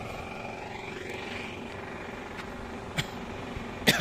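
Steady drone of distant traffic on a highway, with a single faint click about three seconds in.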